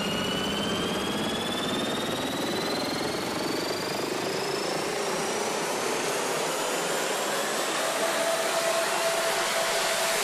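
Electronic music build-up effect: a riser, a noisy sweep with a slowly climbing tone that grows thinner in the bass as it rises, with a faint steady tone joining near the end.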